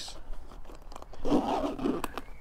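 Lid of a waterproof motorcycle tank bag being pressed shut by hand: a crunching, scraping rub of its stiff plastic-coated shell, loudest about halfway through.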